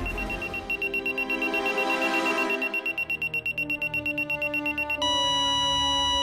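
Electronic countdown beeping: a high beep repeating faster and faster, then turning into one continuous beep about five seconds in, over a music bed.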